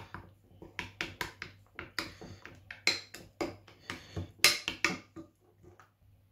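Metal spoon stirring a thick yogurt-and-spice marinade in a ceramic bowl: irregular clinks and scrapes of the spoon against the bowl, the loudest knock about four seconds in.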